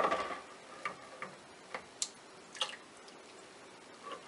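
A few faint, sharp clicks and light knocks, about five spread across the seconds, as a stick blender is handled against the side of a plastic bucket of soap oils.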